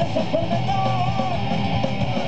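Live rock band playing: electric guitars over busy drums, with a melodic line bending in pitch above them.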